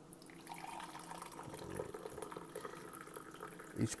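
Freshly brewed hot coffee pouring from a coffee-maker carafe into a mug, a steady stream of liquid filling the mug.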